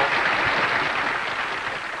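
Audience applauding, the applause slowly fading.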